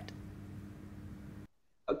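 Quiet room tone with a faint steady hum, which drops out to dead silence about a second and a half in. A man's voice starts over a video-call line just at the end.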